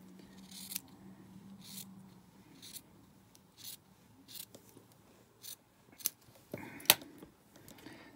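Scissors snipping through stretch cotton T-shirt fabric in a series of short snips, about one a second, with the sharpest snip near the end.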